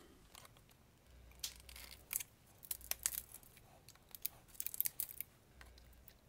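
Flush side cutters snipping excess dovetail tabs off 3D-printed plastic trays: a scattered series of sharp clicks and snaps, with light knocks from the plastic parts being handled.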